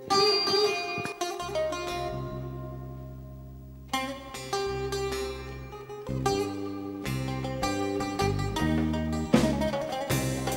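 Bouzouki picking a Greek song introduction over bass, with a held chord ringing out and fading from about two seconds in before the picked melody resumes about four seconds in.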